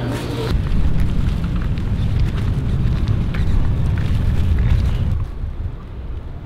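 A loud, steady low rumble with no voices, dropping away about five seconds in.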